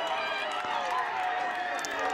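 Several voices shouting and calling at once, overlapping, from players and onlookers reacting to a saved penalty.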